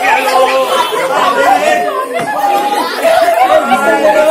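Several people talking at once in a large hall, voices overlapping without a break.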